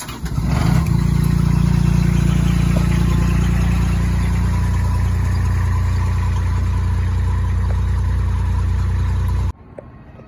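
JLG boom lift's engine starting up from the key, then running steadily. The sound cuts off suddenly about half a second before the end.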